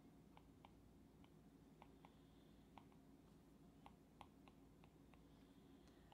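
Near silence with faint, irregular light clicks from an Apple Pencil tip tapping and stroking across an iPad Pro's glass screen, about a dozen in all.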